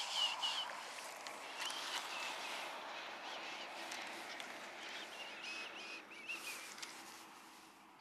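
Birds calling with short, repeated chirps over a steady outdoor background hiss.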